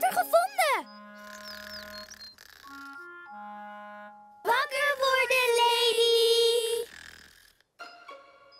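Light children's cartoon background music picking out a slow stepping melody. About halfway through comes a loud, long, drawn-out vocal sound from a cartoon character, held for a couple of seconds.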